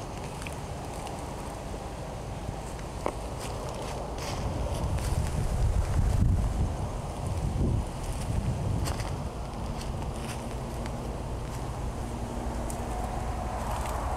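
Wind buffeting the camera microphone: a low rumble that swells about halfway through. Light rustling and a few handling clicks come with it as the camera moves.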